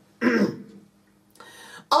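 A man clears his throat once, a short loud burst that fades away.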